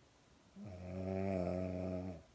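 A sleeping pug snoring: one drawn-out, low, steady-pitched snore that starts about half a second in and lasts about a second and a half.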